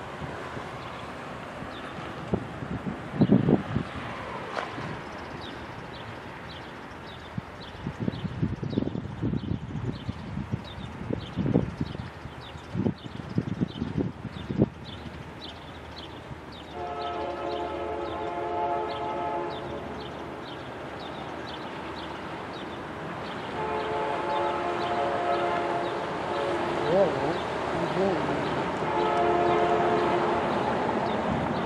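A distant diesel locomotive horn sounds two long chord blasts, about 17 and 24 seconds in, with a third beginning near the end, as the train approaches the grade crossing. Earlier there are low thumps and rumbles of wind on the microphone, the loudest about 3 seconds in.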